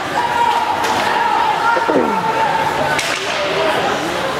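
Ice hockey game sounds in an indoor rink: a long steady held call over voices, then a sharp crack of a stick or puck about three seconds in.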